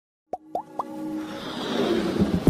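Animated logo intro sting: three quick pops that each glide upward in pitch, then a whoosh that swells louder under a held tone.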